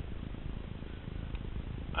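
Low, fluttering rumble of wind buffeting the microphone.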